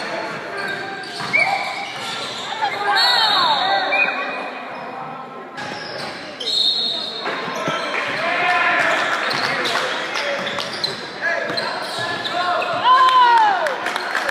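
Basketball game sounds on a hardwood gym floor: sneakers squeaking in short rising and falling squeals, and the ball bouncing, with voices from players and spectators underneath.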